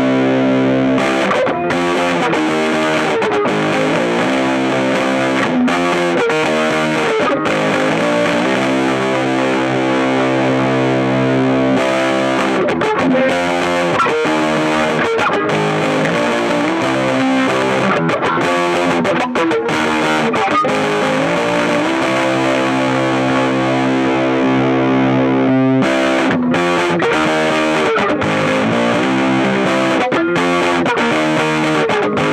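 Paul Reed Smith CE 24 electric guitar played through a Fat Foot Effects Thallium 81 distortion pedal into Benson Monarch and 1979 Fender Champ amps. It plays distorted chords, some left to ring for a second or two and others cut into shorter rhythmic strokes.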